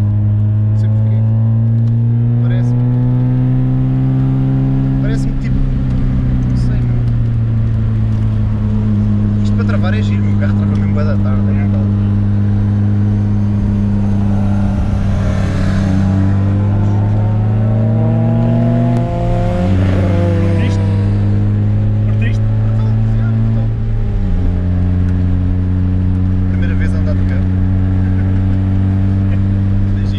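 Race car engine heard from inside the cabin under hard driving on track, its note climbing slowly and steadily through long pulls and dropping back, sharply twice in the second half as the revs fall.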